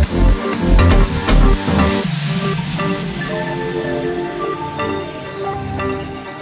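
Sped-up (nightcore) hands-up dance track: a driving electronic kick beat stops about two seconds in, with a sweep effect rising into the break and then falling away. What remains is a breakdown of synth melody notes without the kick.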